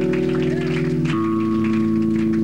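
Rock band playing live, the guitars and bass holding long sustained chords that change to a new chord about a second in.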